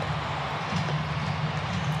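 Steady, even arena background noise of a basketball game broadcast: a low hum with no distinct events standing out.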